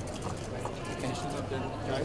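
Men's voices in close, overlapping conversation, with a quick run of sharp clicks in the first second.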